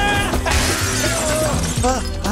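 Glass shattering with a spray of scattering fragments, starting about half a second in and dying away within about a second, as a fight sound effect over the film score's sustained music.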